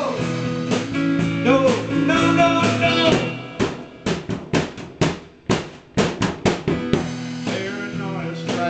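A small live rock band playing; after about three and a half seconds the band drops out and the drums play a short break of separate hits, and the guitar and band come back in near the end.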